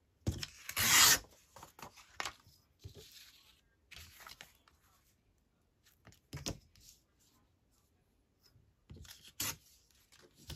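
Paper torn against the edge of a steel ruler in one quick rip about a second in, followed by soft rustling of paper scraps being handled and a couple of light knocks.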